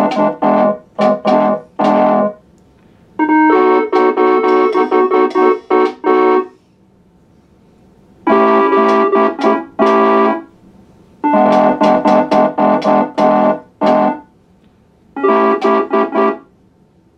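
MIDI keyboard playing chords through an electronic voice: phrases of quickly repeated, stabbed chords alternating with held chords. The phrases are broken by short pauses of a second or two.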